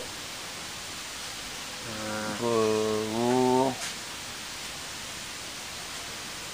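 Steady hiss of background noise, with a man's voice holding one low, level drawn-out vocal sound for just under two seconds in the middle.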